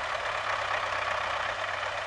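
MTZ-80 tractor's four-cylinder diesel engine running steadily while its front loader holds a round hay bale raised over a trailer.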